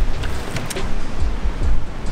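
Kobalt 40V brushless cordless lawn mower running, really quiet, under background music.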